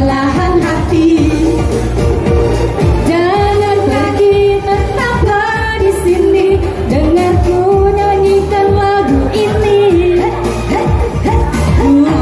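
Two women singing a pop song together into microphones, amplified through a sound system over backing music.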